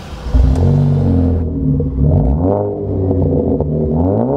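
Air-cooled flat-six engine of a 1979 Porsche 911 SC Targa, running on a standalone EFI system, being revved. The note holds fairly steady, rises and falls about two seconds in, and climbs again at the end.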